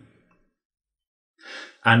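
A man's short audible in-breath, taken after about a second of silence just before he resumes talking.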